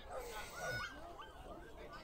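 Faint background chatter of people, with a dog's high whines and yips rising and falling, most clearly about half a second to a second in.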